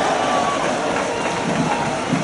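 Spectators at a football match shouting and cheering as a goal is scored, over a steady rush of noise.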